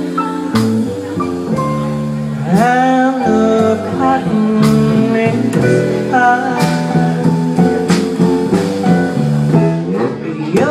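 Live small-group jazz: a woman singing a slow, gliding vocal line over a plucked upright double bass.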